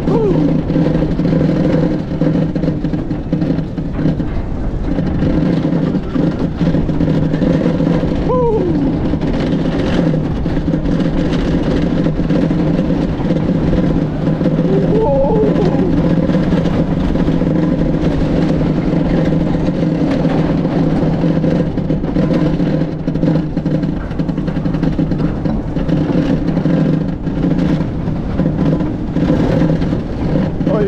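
Bobsled coaster car running fast down its trough, a loud, steady rumble of the wheels with a few short squeals that drop in pitch, about eight seconds in, midway and at the end.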